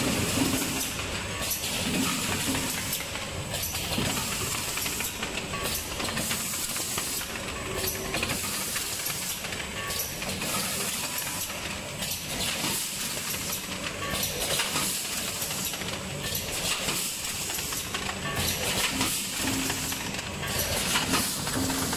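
Rotary stand-up pouch packing machine running: a steady mechanical rattle with hisses of compressed air from its pneumatic actuators coming and going every second or two.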